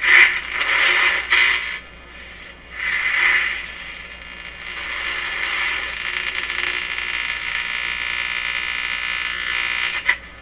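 Stewart Warner R514 tube radio's speaker giving static and hiss as its tuning is moved by a stick. The hiss swells and fades twice over the first few seconds, then settles into a steady hiss. The antenna is not connected, so no clear station comes through.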